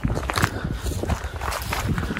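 Footsteps of someone walking on grass, a few irregular soft steps, with gusty wind buffeting the microphone in a steady low rumble.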